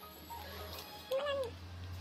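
A baby's single short vocalization, a brief coo that rises and falls in pitch, a little over a second in, over a low steady hum.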